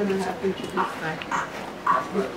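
Indistinct talking from people close by, in short broken phrases.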